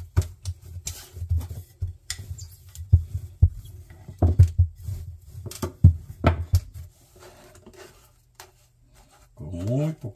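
Wooden rolling pin rolling out a ball of dough on a stone countertop: a run of irregular knocks and thumps as the pin and hands strike the counter, dying away about seven seconds in.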